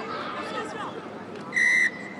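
Referee's whistle, one short steady blast near the end, stopping play for offside. Before it, faint shouts of players on the pitch.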